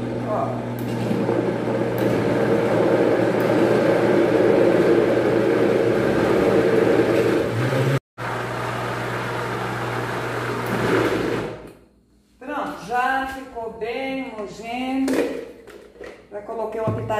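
Electric countertop blender running steadily as it churns a thick grated-cassava cake batter, with a constant low motor hum; the sound breaks off for an instant about halfway, runs on, then winds down after about eleven seconds. A woman's voice follows near the end.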